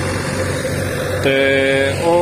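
Tractor diesel engine running steadily with a low drone. About a second and a quarter in, a loud, steady, held pitched tone starts over it and runs on to the end.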